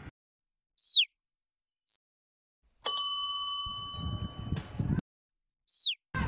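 Edited-in comedy sound effects over dead silence: a short falling whistle, then a bell-like ding that rings for about two seconds, then the same falling whistle again near the end.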